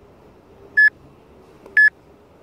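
Two short electronic beeps on one steady high pitch, about a second apart, part of an evenly spaced series.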